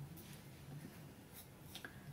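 Faint handling sounds: a few soft clicks and scrapes as a small cosmetics jar of nail cream is handled and opened.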